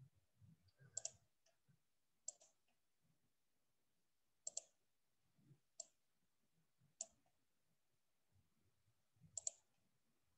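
Faint computer mouse clicks, six over the stretch, several of them in quick pairs, with soft low bumps in between.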